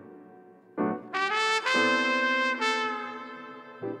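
Smooth jazz instrumental with a horn lead: after a soft start, a phrase begins about a second in and holds a long note through the middle, then fades before a new note near the end.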